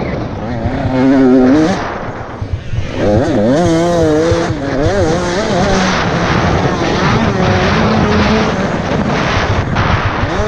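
Enduro motorcycle engine heard from the rider's helmet, revving up and down repeatedly with the throttle while riding a dirt course. The revs drop off briefly about two and a half seconds in, then pick up again.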